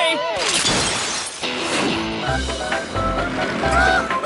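A cartoon dog's laugh trails off, then a noisy shattering-crash sound effect comes about half a second in and lasts about a second. Cartoon background music with a pulsing bass follows.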